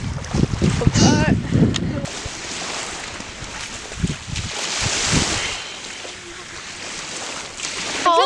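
Wind buffeting the microphone for the first two seconds, then the even hiss of small waves washing on the shore, swelling and fading about five seconds in.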